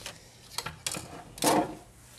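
Plastic set squares sliding over drawing paper and being lifted off it: a few light clicks and paper rustles, the loudest about a second and a half in.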